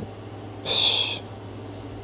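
A man's short breathy exhale, a hiss about half a second long, over a low steady electrical hum.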